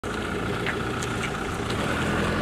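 Motorhome engine idling steadily, with a few faint light ticks.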